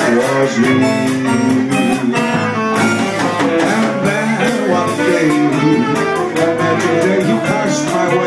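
Small live band playing an instrumental passage: saxophone over electric bass and keyboard, with drums keeping a steady cymbal beat.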